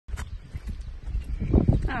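Pushchair rolling along an asphalt road, a steady low rumble with a click near the start and a few light knocks just before the end. A woman's voice begins a falling "aww" at the very end.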